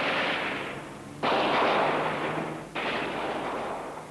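Gunfire: three loud bursts about a second and a half apart, each starting suddenly and dying away.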